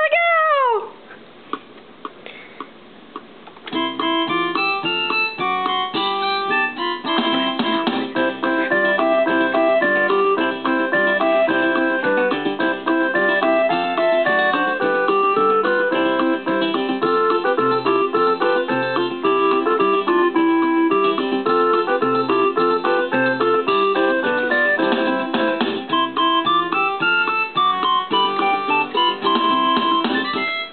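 Portable electronic keyboard playing a fast, busy tune in a piano sound, with many quick notes and chords; it starts suddenly about four seconds in and stops abruptly at the end.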